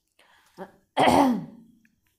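A woman clears her throat once, loudly, about a second in, the sound falling in pitch as it fades.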